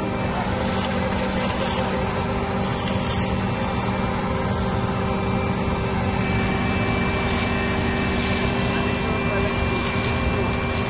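Heavy diesel engine of an asphalt paver running steadily at a constant pitch while laying asphalt.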